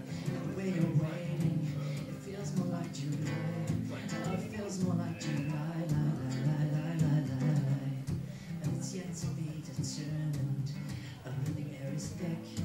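Acoustic guitar strummed, chord after chord, as accompaniment to a song.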